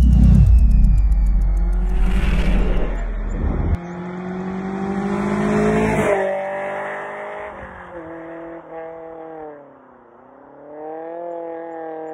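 Channel intro sting: a loud deep boom with falling tones at the start, then music-like pitched tones that slide down and back up in pitch, fading toward the end.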